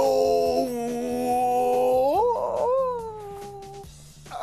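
A man's long wordless vocal note, held on one pitch while he bends into a contorted yoga pose. About two seconds in it slides up through a rough, cracking stretch, then holds again and fades out near the end.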